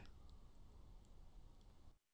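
Near silence: faint room tone with a few tiny, faint clicks.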